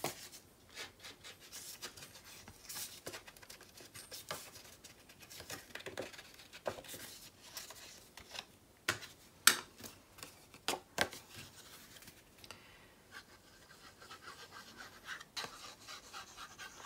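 Ink pad rubbed and dabbed along the edge of a sheet of patterned paper: faint, irregular scratching and scuffing, with a few sharp taps and clicks, the loudest in the second half.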